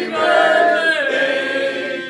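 A group of people singing together in unison, with long held notes that slide in pitch.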